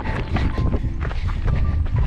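Wind buffeting a handheld camera's microphone in a strong, uneven rumble, with a runner's footsteps on a stony moorland path.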